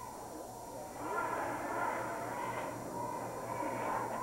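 Crowd noise in a high-school gymnasium: many spectators' voices blended together, swelling about a second in, over a steady low hum.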